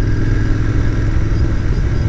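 Royal Enfield Continental GT 650's parallel-twin engine running steadily while the motorcycle cruises along the road.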